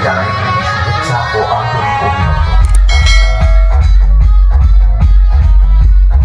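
Loud music played through a large DJ sound system of power amplifiers and speaker boxes; about two seconds in, a heavy deep bass comes in, pulsing under a steady beat.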